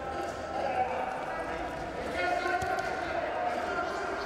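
Voices shouting over the bout, with a few dull thuds of wrestlers' feet and bodies on the wrestling mat as they grapple in a clinch.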